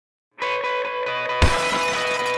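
Intro music with a held, even tone that comes in about half a second in. About a second and a half in, a sudden loud shattering crash, a breaking-glass sound effect, cuts across it and rings on.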